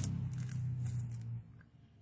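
Handling noise from hands moving over the cloth work surface and cord close to the microphone: a low rumble with a few light clicks that stops about a second and a half in.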